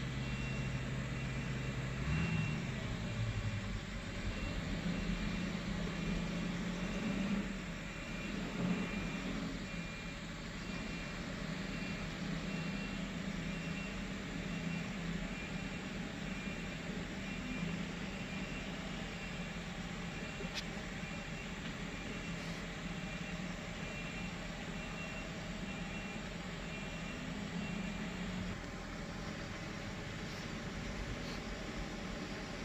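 Diesel engine of a small bus running steadily at low revs as it creeps through deep mud ruts, its pitch shifting about two seconds in and then holding.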